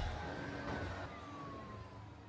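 The fading tail of a rock and nightcore music mashup after its last hit: a faint low hum and a thin tone sliding slowly downward, dying away.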